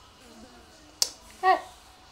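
A single sharp click, then about half a second later a short, louder vocal exclamation falling in pitch, with faint voice before them.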